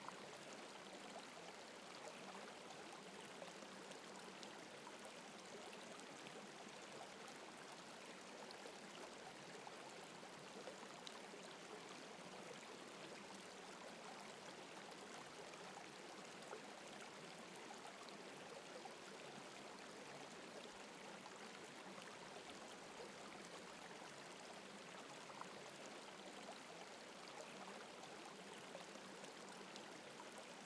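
Faint, steady noise of gently running water, like a small stream, with no change throughout.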